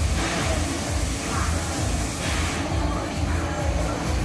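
Loud fairground ride music played over a sound system, with a steady bass beat. A hiss sits over it for the first two and a half seconds or so.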